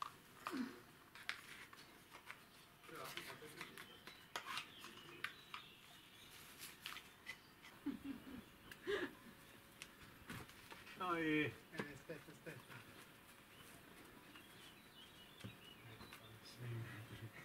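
A quiet stretch with scattered small clicks and taps and a few brief, low voices. One short voiced sound stands out about eleven seconds in.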